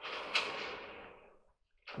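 Coiled wire heating element scraping against a clothes dryer's sheet-metal heater pan as it is worked into place by hand. There is a sharp click about a third of a second in, and the rasp fades out over about a second and a half.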